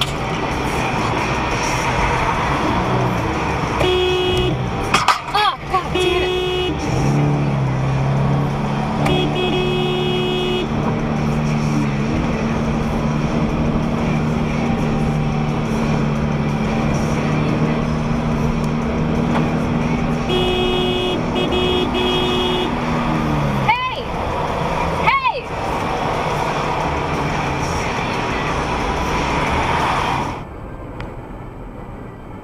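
Car road and tyre noise on a highway, broken by short horn honks: a pair about four to six seconds in, one around nine to ten seconds, and a burst just past twenty seconds. A long steady low tone runs from about seven seconds to twenty-three seconds, and short sliding tones come around five and twenty-five seconds.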